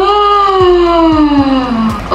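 A singing voice holding one long note that slowly falls in pitch, over faint, repeated low thumps.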